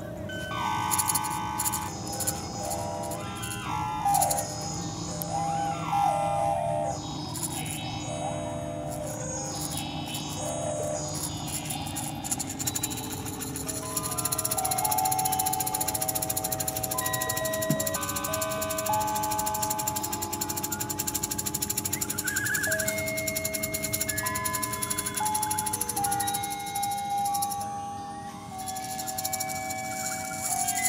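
Free-improvised ensemble music, with slide whistles, violin, percussion and electronics. For the first dozen seconds pitches slide up and down again and again, then a run of held notes steps between pitches.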